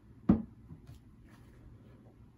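A drinking glass set down on a tabletop: one solid knock about a third of a second in, then a couple of faint taps as it settles.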